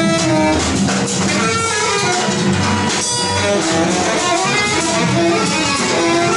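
Free-improvised jazz from saxophone, cello and drum kit playing together: shifting sustained and broken pitched lines over scattered drum and cymbal strikes, with no pause.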